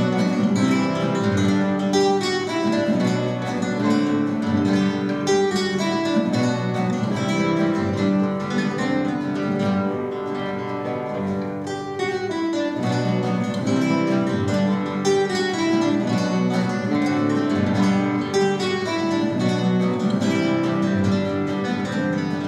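A trio of classical guitars playing an ensemble piece together, a steady stream of plucked notes, briefly softer about halfway through.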